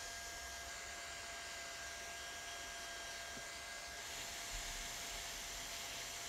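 Hand-held hot-air welding gun running steadily while heat-welding the flap of a PVC roofing membrane: a faint, even blower hiss with a thin steady whine.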